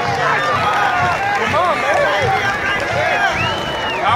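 Many voices of a football team and crowd chattering and calling out over one another, with several rising-and-falling shouts near the middle and the end.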